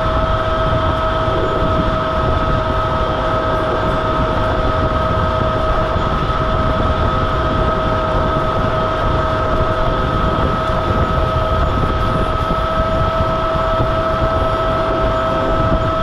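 Monosem NC pneumatic planter being pulled through the field while sowing: its tractor-PTO-driven vacuum fan gives a loud, steady high whine over the constant rumble of the tractor and the planter running over the soil.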